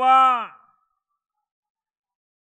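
A man's speaking voice holding out the last word of a phrase for about half a second, then silence.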